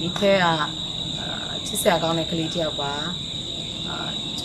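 A woman talking in Burmese over a steady high-pitched chirring of crickets.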